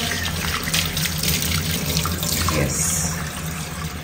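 Kitchen tap running steadily into a stainless steel sink, the stream splashing as fruit is rinsed under it by hand.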